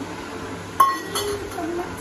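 A stainless steel dish clinks sharply once with a short metallic ring, a little under a second in, followed by a fainter clink.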